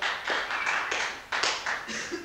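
Audience applauding, a run of uneven claps.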